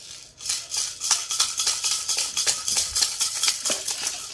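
Rapid shaker-like rattling of small hard objects being shaken or handled, several quick strokes a second for about three seconds.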